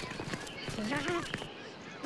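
Scattered light taps and clicks, with a short voiced call rising in pitch about a second in.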